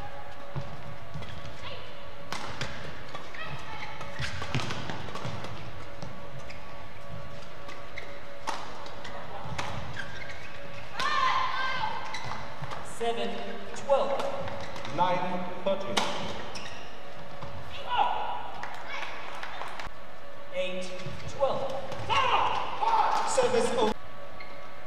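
Badminton doubles rallies: repeated sharp smacks of rackets striking the shuttlecock, with short high squeaks of court shoes as players push off and lunge, thickest near the end.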